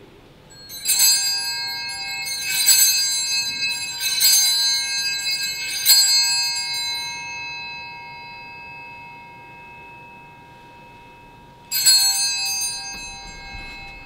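Altar bells (Sanctus bells) rung at the consecration of the host: four bright rings about one and a half to two seconds apart, each left to die away slowly, then one more ring near the end.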